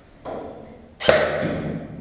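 A short soft noise, then a sudden sharp knock about a second in with a rattling tail that fades over most of a second, heard inside a metal shipping container.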